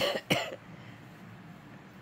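A woman coughs twice in quick succession, then an electric fan runs steadily in the background.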